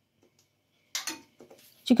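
A metal spoon set down against the rim of a nonstick frying pan: one brief clink about a second in, with a couple of faint ticks after it.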